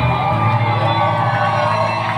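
A live band playing amplified music, with the crowd around cheering and whooping over it.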